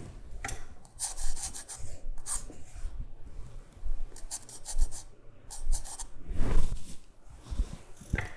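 Pencil sketching on drawing paper: a series of short, scratchy back-and-forth strokes laying in straight construction lines.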